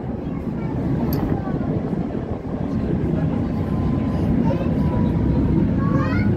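Tram running along its rails, heard from inside the car: a steady low rumble, with a faint thin whine in the second half.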